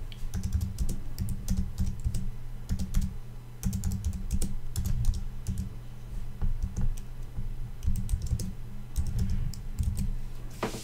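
Typing on a computer keyboard: an irregular run of quick key clicks with short pauses between words.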